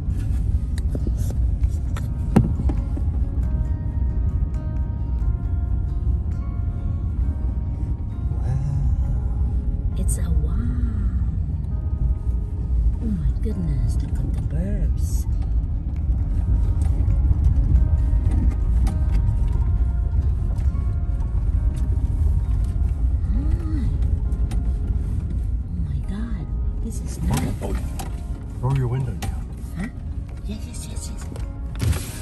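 Steady low rumble of a pickup truck's engine and tyres heard from inside the cab while driving, with music and a voice playing over it.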